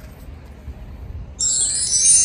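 Low wind rumble on the microphone, then, about one and a half seconds in, a sudden bright, sparkly chime sound effect that rings on.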